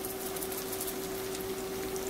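A steady, constant-pitch hum from a running kitchen appliance motor, over a faint sizzle of yellow squash and onions sauteing in a stainless steel skillet.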